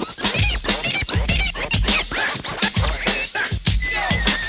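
Turntable scratching over a hip-hop beat: quick back-and-forth scratch sweeps over a steady kick drum. Near the end a high, steady tone comes in.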